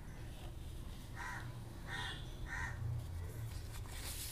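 A bird calling three times in the background, short calls starting about a second in and roughly two-thirds of a second apart, over a faint steady low hum.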